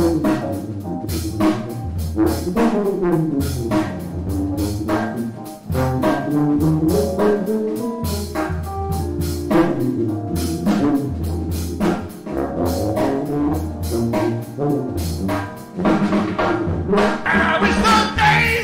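Small jazz combo: a sousaphone plays a moving melodic solo over electric keyboard and drum kit, with steady cymbal and drum strokes. The sound grows fuller over the last couple of seconds.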